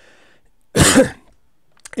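A man's single short cough, about three-quarters of a second in.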